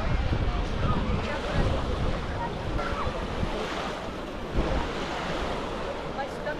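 Small waves washing on a sandy shore, with wind buffeting the microphone in a steady low rumble. Faint voices and children's calls of beachgoers are mixed in.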